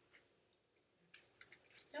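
Near silence: room tone, with a few faint, short clicks in the second half.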